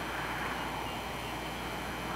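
Steady, even noise of traffic on a highway.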